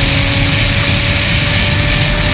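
IndyCar 2.2-litre twin-turbo V6 engine heard from the cockpit, holding a steady note at an even speed over a rush of air and road noise.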